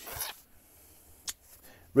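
A brief papery slide and rustle as a 78 rpm shellac record in its paper sleeve is laid onto a stack of sleeved records, followed by a single faint click a little over a second in.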